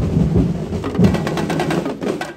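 A festival drum ensemble playing a fast, dense beat of rapid strokes on deep drums, with sharper hits on top.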